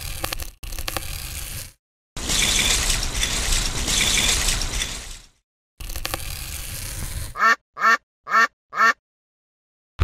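Edited stop-motion sound effects: clicking, ratchet-like rattling, and a louder noisy rush in the middle. Near the end come four short loud calls in quick succession, about two a second, each sliding down in pitch.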